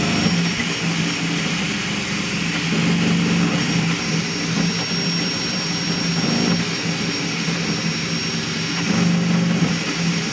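High-speed crossed-gantry 3D printer printing: a steady rush of the cooling fans over a low hum from the stepper motors that swells and shifts in pitch as the print head changes direction. A thin high whine grows stronger about halfway through.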